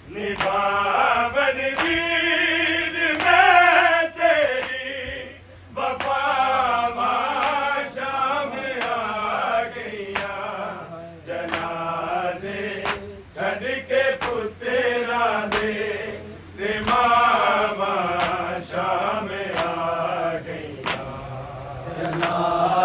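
Men of a noha group chanting a Punjabi noha, a Shia mourning lament, in sustained, wavering melodic phrases broken by short pauses every few seconds.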